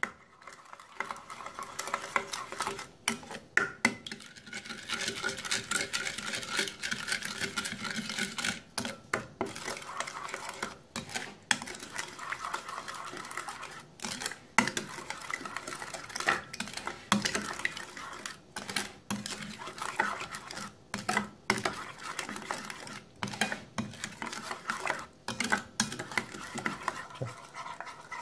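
A spoon stirring thick mayonnaise dressing in a glass bowl: wet, squelching strokes in a quick, irregular rhythm, with the spoon scraping and tapping against the glass.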